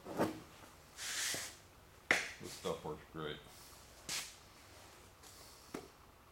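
Handling noises: a short hiss about a second in, a sharp click after about two seconds and another short burst near four seconds, with a few muttered words.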